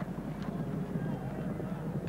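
Steady low background noise of the racecourse broadcast, with no commentary over it, as the field leaves the starting stalls.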